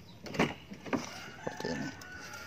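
Toyota IST car door being opened: a sharp latch click, then a second, softer knock as the door swings open, followed by a faint steady whine.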